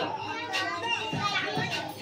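Many young children talking and chattering at once, with background music playing under the voices.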